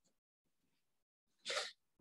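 Near silence, then about one and a half seconds in a single short, sharp breath drawn in by a man just before he speaks.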